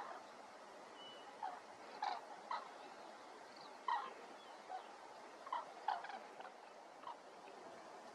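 A flock of common cranes calling in flight: short, loud trumpeting calls from several birds, repeated at irregular intervals.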